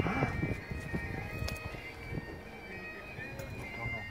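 Quiet outdoor street background with faint, steady music in the distance, after a brief murmur of a voice at the very start.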